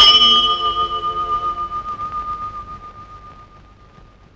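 A large metal bell struck once, ringing on and slowly dying away over the next few seconds.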